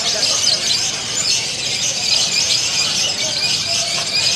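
Lovebirds giving a loud, shrill, unbroken chattering song: the long trilling 'ngekek' that lovebirds are judged on at song contests.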